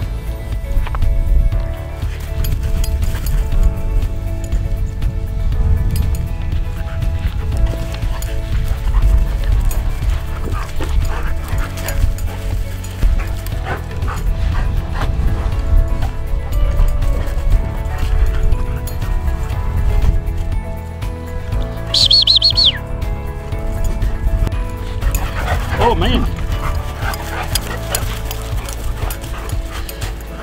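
Background music throughout, with dogs barking and yipping in play; a few short high yelps come in the last third.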